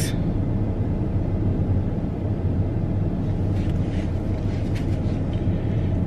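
Steady low hum of a stationary car running, heard from inside the cabin, with a few faint clicks near the middle.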